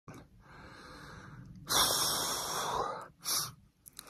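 A man breathing hard close to the microphone: soft breathing, then a long loud breath about halfway through and a short one near the end.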